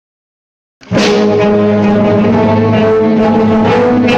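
Concert band of wind and brass players playing loud, sustained chords. The band comes in suddenly just under a second in, after silence.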